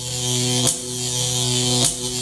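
Logo sting sound effect: a steady electric buzz with a hiss above it, broken by two short clicks a little over a second apart.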